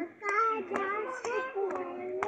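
A child singing a drawn-out tune, with a sharp clap or click keeping time about twice a second.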